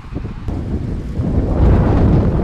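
Wind buffeting the camcorder microphone: a loud, low rumble that swells about halfway through.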